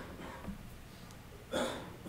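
A man's single short cough about one and a half seconds in, over quiet room tone.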